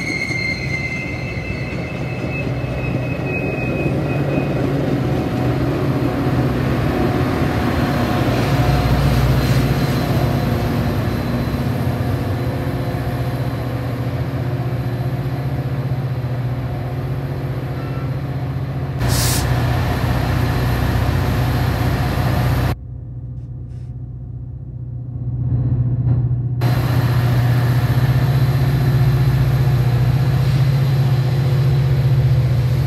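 Metra commuter trains: bilevel coaches rolling past with a brief high wheel squeal that falls in pitch and fades in the first second, then the steady low drone of an approaching Metra F40PHM-2 diesel locomotive and its train. A single sharp crack comes about two-thirds of the way through, and a few seconds later the sound goes briefly muffled.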